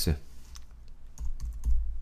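Typing on a computer keyboard: scattered key clicks as a terminal command is typed and a typo is backspaced over. From about a second in there are dull low thumps under the clicks.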